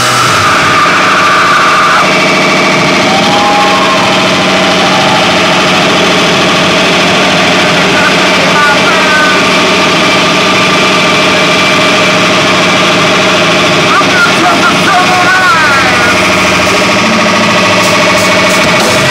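Live rock band's amplified instruments holding a loud, steady drone without drums, with a voice wailing in a few short up-and-down glides over it.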